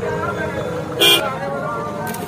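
A vehicle horn gives one short toot about a second in, over the chatter of a walking crowd.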